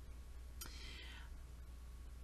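A quiet pause in a woman's talk. A low steady hum runs underneath, and a short breathy hiss, a quick breath, comes about half a second in.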